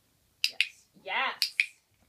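A dog-training clicker clicking twice, each click a quick press-and-release double snap: once about half a second in and again about a second later, marking the dog's correct behaviour. A brief wavering voice sound falls between the two clicks.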